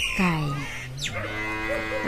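A low, drawn-out animal call lasting about a second, starting about halfway through, just after a short falling squawk.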